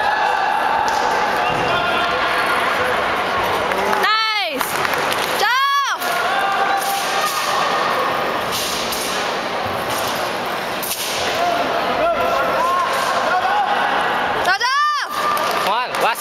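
Crowd chatter echoing in a large sports hall, with short sweeping swooshes that rise and fall about four, six and fifteen seconds in.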